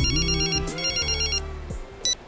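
Mobile phone ringtone trilling in two bursts and stopping about a second and a half in, over soft background film music.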